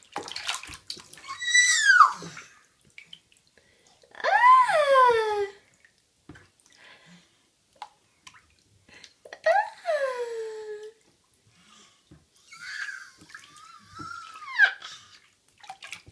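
A baby in a bath making about four drawn-out high squeals, each sliding down in pitch, with pauses between them. Light bath-water sounds are under them.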